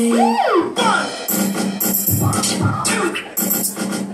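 Dance music for a breakdance routine, opening with swooping pitch glides in the first second, then settling into a beat with repeated bass hits.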